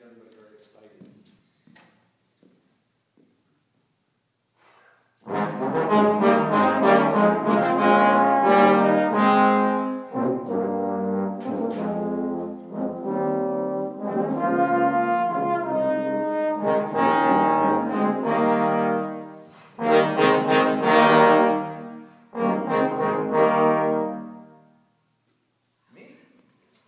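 A small brass ensemble, including trumpet, trombone and tuba, playing a piece together in sustained chords. The playing starts about five seconds in after a quiet pause, has brief breaks near the middle and later, and stops just before the end.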